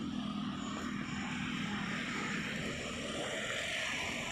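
Steady drone of a motor vehicle, with an even low hum and a hiss above it.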